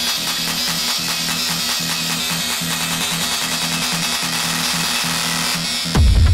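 Dark techno in a DJ mix, in a breakdown without the kick drum: a dense, noisy high synth texture over a pulsing mid-bass riff. Right at the end the high texture cuts out and the heavy kick and bass come back in.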